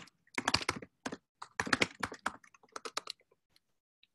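Computer keyboard being typed on: quick, irregular runs of key clicks in several clusters that thin out and stop about three and a half seconds in, as a terminal command is entered.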